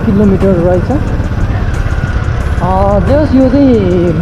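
Motorcycle engine running steadily while riding along a road, a continuous low rumble, with a voice talking over it at the start and again near the end.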